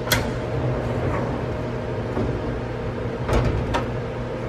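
Double doors of a SMART-B818IV grinding machine's enclosure being pulled open: a sharp click as they release right at the start, then two knocks close together near the end, over a steady low machine hum.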